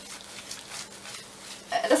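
Hands rubbing and pressing dish soap into a wet faux-fur rug, a faint soft rubbing of wet fibres.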